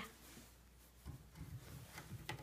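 Near silence, then faint rubbing and handling noises starting about a second in.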